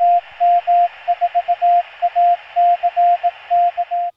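Morse code (CW) sent as a steady beeping tone over radio static, spelling out the call sign KM4ACK in dots and dashes.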